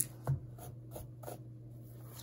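Fingers scratching and rubbing the fuzzy plush cover of a notebook in several short strokes, with a soft tap about a third of a second in.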